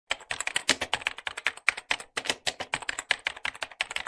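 Keyboard typing sound effect: a rapid run of sharp key clicks, several a second, with a short break a little past halfway, matching on-screen text being typed letter by letter.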